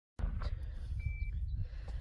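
Outdoor wind rumbling on the microphone, cutting in just after the start, with a brief faint high steady tone about a second in.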